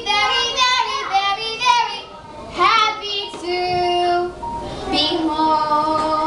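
Several children singing a show tune together, their voices overlapping, with long held notes in the second half.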